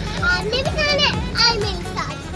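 A young girl's high-pitched, excited voice calling out, over background music.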